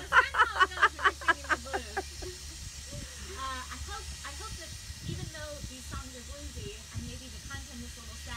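A woman laughing, a quick run of laughs that fades out about two seconds in.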